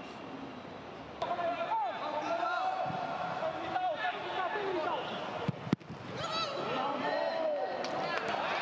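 Footballers shouting to each other on the pitch, with no crowd noise. Partway through, a single sharp thud of a ball being struck hard stands out as the loudest sound.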